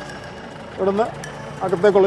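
A jeep's engine running steadily, heard from inside the cabin, under a man's short bursts of speech about a second in and near the end.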